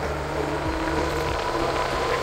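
Fat-tire e-bike's electric motor whining steadily under throttle while the bike rides along, running on two batteries combined in parallel, over low road and wind noise.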